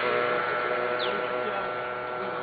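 A steady motor drone, slowly fading away, with a short high falling chirp about a second in.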